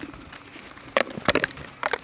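Outer cover of a wooden beehive being lifted off and set down against the hive: a few sharp knocks and scrapes about a second in and again near the end.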